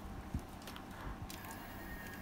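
Faint small clicks and a light knock as badminton string is handled and fed into the gripper of an electric stringing machine's tension head; a faint steady high tone starts about halfway through.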